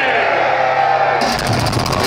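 Live death metal band starting a song: a sustained, distorted low chord rings out, and about a second in the drums come in with rapid hits.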